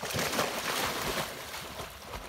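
English setter jumping into a pond with a splash, then water churning and sloshing as it swims out, fading after the first half second.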